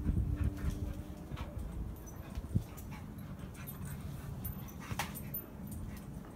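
A dog whimpering.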